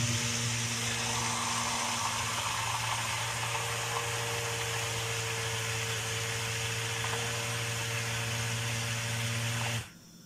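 Hand-held immersion blender running steadily in a tall plastic tub, blending diced ginger with oil and water into a puree: an even motor hum with a whirring hiss. It switches off abruptly just before the end.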